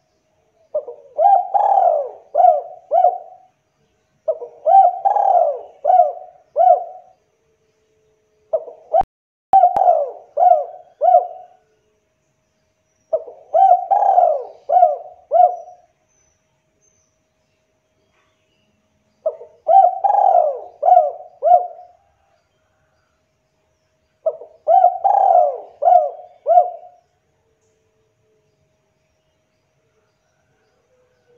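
Spotted dove cooing: six phrases, each a louder opening coo followed by a run of three or four short coo notes, repeated every four to six seconds.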